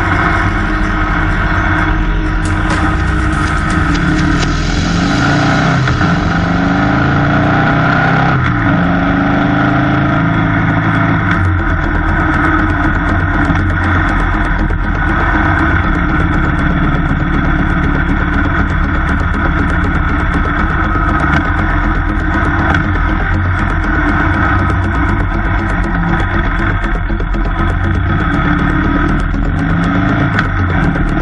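Harley-Davidson V-twin motorcycle engine running under way, with wind and road noise. Its pitch rises and falls repeatedly over the first several seconds as it revs and changes gear, then holds steadier.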